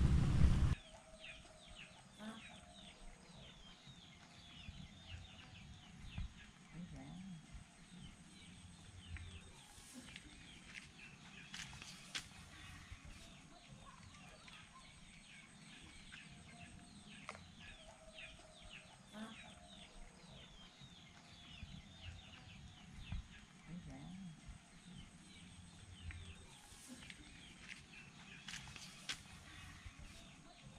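Chickens clucking and chirping faintly in the background, with a steady run of short, high, falling chirps and an occasional low cluck. A loud rush of noise cuts off within the first second.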